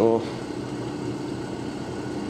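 Steady low mechanical hum in the background.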